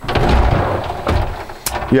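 Curved glass shower door sliding along its track: a rough rolling rumble for about a second, then a sharp knock.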